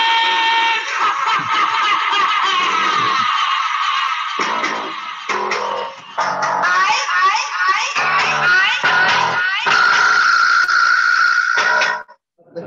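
A phone-driven sound-deterrent loudspeaker for scaring wolves off livestock going off on its timed alarm, blaring a loud recorded track heard as music, heard over a video-call connection. It cuts off suddenly right at the end.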